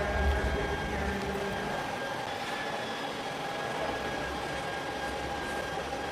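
Steady exhibition-hall background noise: a constant hum with a low rumble in the first second or so.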